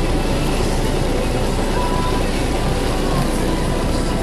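Car driving on a wet street, heard from inside the cabin: a steady mix of engine rumble and tyre noise on wet pavement.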